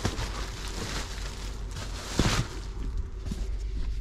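Rustling handling noise as a hardcover book is held and moved close to the microphone, with one louder brush a little past halfway.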